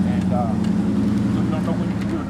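A steady low mechanical hum, of the kind an idling engine makes, with faint speech over it.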